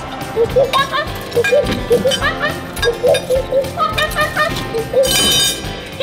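A man imitating a monkey: a string of short hoots over background music, with a brief, louder, bright sound about five seconds in.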